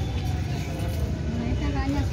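Busy market ambience: indistinct voices of people talking nearby over a steady low rumble.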